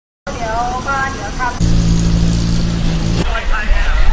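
Voices talking, then a steady low engine hum, like an idling motor, that cuts in abruptly after about a second and a half and stops just as suddenly about a second and a half later. Voices come back near the end.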